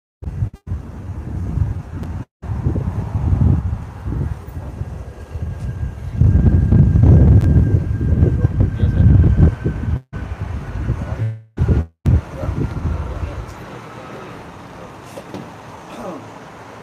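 Low rumbling outdoor street noise, loudest between about six and ten seconds in, with the sound cutting out briefly several times.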